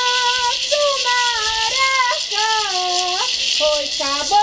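A maracá gourd rattle shaken steadily and continuously while a high voice sings a chant in long, held, gliding notes, as in an indigenous ritual song.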